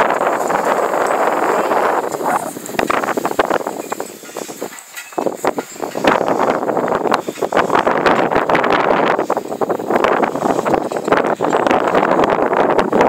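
A loaded draft-size sled scraping and rattling over bare dirt ground as a team of Haflinger horses pulls it, with many knocks and clatter. The noise drops away briefly about five seconds in, then comes back.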